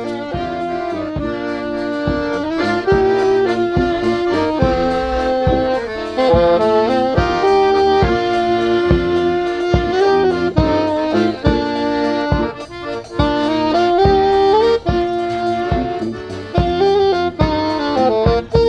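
A wedding band playing an instrumental tune with a steady beat, about two beats a second, under a moving melody line.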